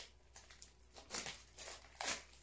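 Plastic rustling and crinkling as a child's non-spill paint pot is handled and pulled apart, a few short rustles with the loudest just over a second in.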